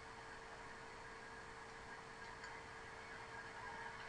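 Faint steady hiss with a thin, steady hum under it: near-silent room tone, with no distinct sounds.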